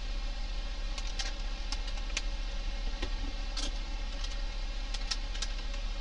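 A steady low hum under a faint hiss, with a handful of small clicks and soft rubbing as a chapstick is worked over a polished steel surface.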